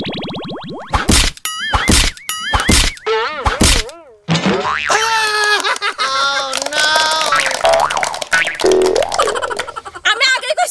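Cartoon-style comedy sound effects: a quick run of springy boings with wobbling pitch in the first few seconds. After a short break come several seconds of warbling, pitched effect sounds.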